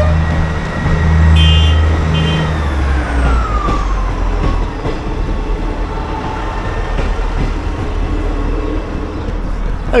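ScotRail diesel multiple-unit train passing over a level crossing: a deep engine drone for the first few seconds, with two short high tones about one and a half and two seconds in, then a whine falling in pitch as the train goes by and a steady rolling rumble of wheels on rail.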